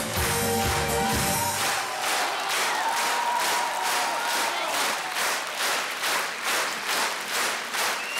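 Audience clapping in unison in a steady rhythm, about two claps a second. Music with a bass line plays under it for the first second and a half, then stops.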